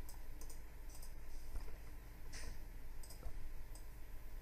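Computer mouse clicking: a scattering of about eight short, sharp clicks at irregular intervals as a file list is scrolled, over a low steady electrical hum.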